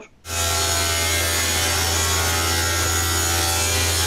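Table saw ripping a narrow wooden strip: a steady motor hum under the even noise of the blade cutting through the wood, starting a moment in.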